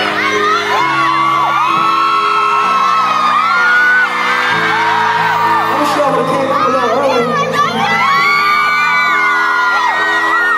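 Live band music heard from the crowd: held keyboard chords that change every second or two, with audience members whooping and screaming over them.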